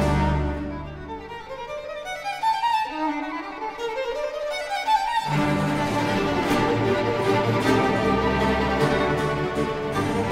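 A Baroque string orchestra with harpsichord playing. After a held opening chord the texture thins to a quieter passage of rising runs, and about five seconds in the full ensemble comes back in with cellos and bass underneath.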